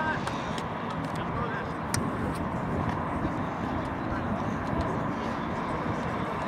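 Outdoor field ambience at a soccer match: a steady hum of city traffic with faint, scattered shouts of players. A sharp knock comes about two seconds in.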